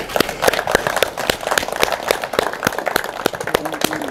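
A small group of people clapping their hands in applause, the separate claps distinct and irregular, with some voices among them.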